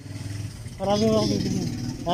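A person's voice making a short, drawn-out utterance about a second in, over a steady low hum.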